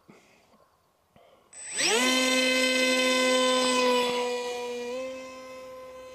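A2212/5T 2700 kV brushless outrunner motor turning a Gemfan Flash 6042 two-blade prop on a 3S pack in a park jet. It spins up from silence about a second and a half in, its high whine rising quickly in pitch. It holds loud and steady, then fades as the plane flies away, stepping slightly higher in pitch near the end.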